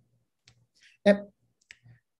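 Mostly silence, broken by a hesitant spoken "uh" about a second in and a few faint short clicks before and after it.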